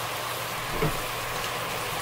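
Diced watermelon rind candying in an aluminium pot over a gas flame, its last sugar syrup sizzling in a steady fizz. The syrup is almost all absorbed and the pieces are drying out.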